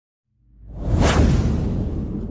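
Whoosh sound effect of a logo intro sting, swelling up from silence about half a second in and peaking around one second, with a deep rumble beneath it that fades slowly.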